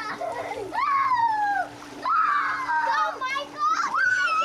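Children's voices calling out in several long, high-pitched shrieks while water splashes in a swimming pool as they play.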